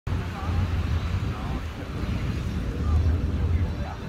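Wind buffeting the microphone in a low, gusting rumble, with faint distant voices of people on the beach.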